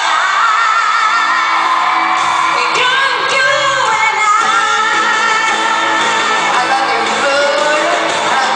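Live pop ballad from far back in an arena: a woman singing lead into a microphone over piano, with the hall's reverberation.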